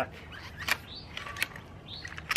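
Metal log-turning tool with a spring-loaded toothed jaw and hook clicking as it grips and rolls a small log over, with two sharp clicks a little under a second apart.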